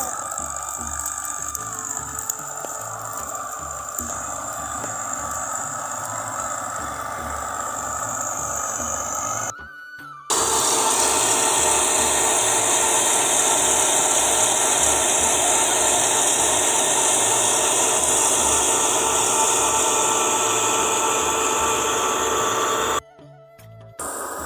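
Tractor-driven threshing machine running steadily while crop straw is fed into it. After a brief drop about ten seconds in, it comes back as a louder, very even machine noise with a steady low pulse.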